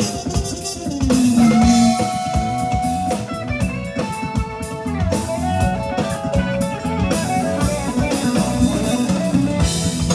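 Live jazz-funk fusion band playing, with electric guitar lines to the fore over drum kit and electric bass.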